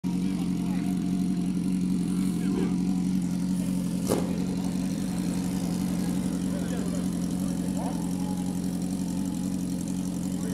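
Sport motorcycle engine idling steadily with an even, unchanging hum, with a single sharp click about four seconds in.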